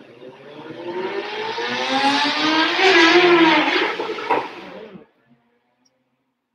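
A motor vehicle going past: its engine sound swells for about three seconds, its pitch rising and then dropping as it passes, and fades out about five seconds in.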